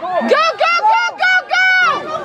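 Loud, high-pitched shouting from the sideline: a run of short yelled syllables cheering and calling to the players.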